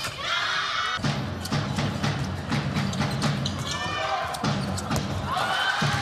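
Indoor sports-hall crowd noise with music or chanting, and a handball bouncing and thudding on the wooden court floor.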